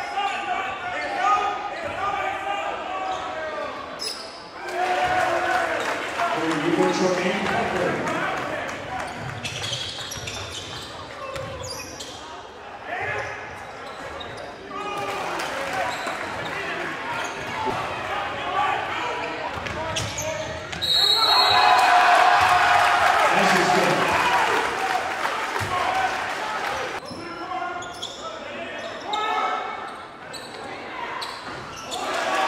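Live gym sound of a basketball game: a ball bouncing on the hardwood court under players' and spectators' voices, echoing in the hall. A louder stretch of crowd voices comes about 21 seconds in, and the sound changes abruptly at several edits.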